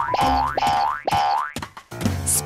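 Cartoon 'boing' spring sound effects, three in quick succession, each rising in pitch, over light music.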